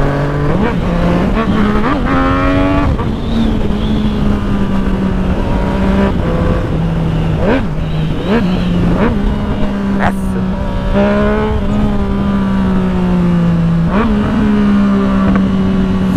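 Yamaha MT-09 three-cylinder motorcycle engine running loud as the bike is ridden, its note stepping up and down with throttle and gear changes and holding steady between them, over a low rush of wind on the microphone.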